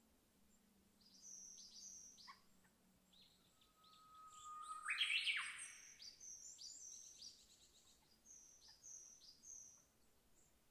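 Birds calling in woodland: groups of short, high, downward-sliding whistled notes repeated every second or so. About five seconds in, a louder call holds a steady pitch, then sweeps sharply upward and breaks off.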